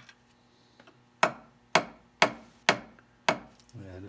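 Small hammer tapping a pin into a wooden model bowsprit: five sharp, light taps about half a second apart. The pin is going into a pilot hole that was not drilled quite deep enough.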